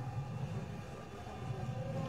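A low, steady rumble with faint background hum.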